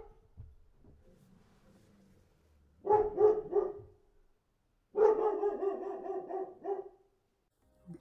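A dog barking: a quick run of barks about three seconds in, then a longer run about five seconds in.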